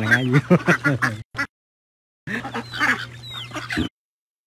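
Domestic ducks quacking in a backyard flock, mixed with a man's voice at first. The sound cuts out to dead silence twice: about a second in and again just before the end.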